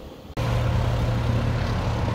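Steady road and engine drone of a car driving on a highway, heard from inside the cabin, with a strong low hum. It starts abruptly about a third of a second in, after a brief moment of quiet room tone.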